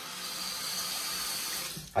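Water running steadily from a bathroom sink tap, cutting off near the end.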